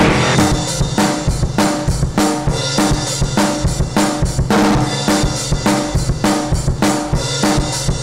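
Hardcore punk band playing an instrumental stretch: a drum kit of bass drum, snare and cymbals beats out a steady rhythm over bass and guitar.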